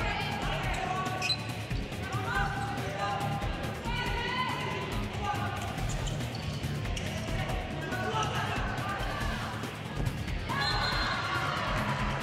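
A handball bouncing on the court during play, over background music.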